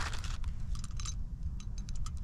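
Dry dog food kibble being handled in a small plastic bag: scattered light clicks and crinkles as pieces are picked out, with a thicker flurry about a second in.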